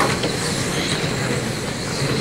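Radio-controlled electric GT cars with 10.5-turn brushless motors running laps together: a steady whirring with a faint high motor whine over it.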